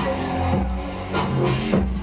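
Electronic bass music played loud on a venue's sound system during a live DJ set, with deep held bass notes under a steady beat.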